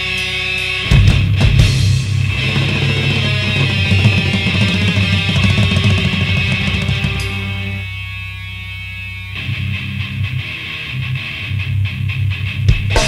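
Metalcore band demo recording, instrumental passage. A clean picked guitar figure gives way about a second in to the full band: distorted electric guitars, bass and drums. The bass and drums drop out for about a second near the eight-second mark, then the full band comes back in.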